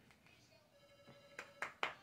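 Oracle cards being shuffled by hand: three quick snaps of the cards near the end, over a faint steady tone.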